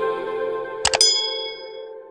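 A quick run of mouse-click sound effects about a second in, followed by a high notification-bell ding that rings out and fades. Under it, the held notes of an outro music sting die away.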